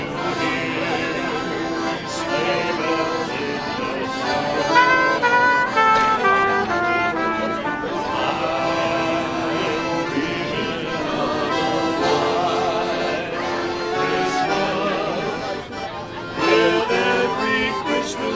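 Brass band music, a melody carried by brass instruments in clear stepped notes.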